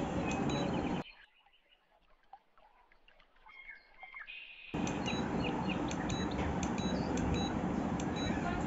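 A steady background hiss with short, high chirps scattered through it. For nearly four seconds in the middle it drops almost to quiet, leaving only faint chirps.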